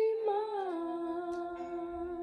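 A girl's singing voice holding the word "be" on one long note that slides down in pitch about half a second in and then stays steady.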